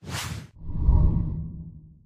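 Logo-intro sound effect: a quick whoosh, then a low, deep swell that fades away over about a second and a half.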